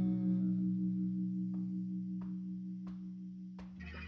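An electric guitar and bass hold a sustained chord that slowly rings out and fades. Four faint, evenly spaced clicks keep time under it, and near the end a new low note comes in.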